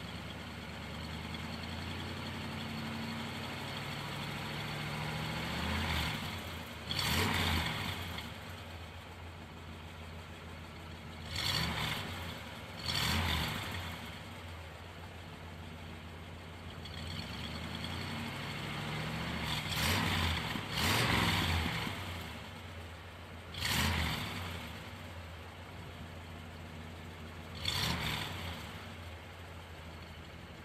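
The 455 cubic-inch Rocket V8 of a 1971 Oldsmobile 442 W-30 idling through its true dual exhaust, blipped to short revs several times and settling back to idle after each.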